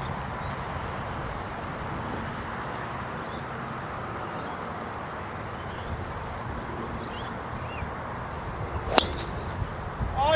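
Golf driver striking the ball off the tee: one sharp crack near the end, over a steady faint outdoor background.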